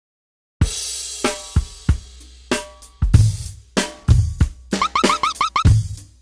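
Electronic dance loop of drum samples from the Launchpad app: a cymbal crash about half a second in, then a kick-and-snare beat with hi-hat. Near the end comes a quick run of short, rising synth blips.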